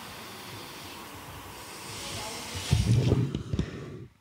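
Steady hiss of an open microphone line. About three seconds in, a brief low rumble of bumps breaks through it.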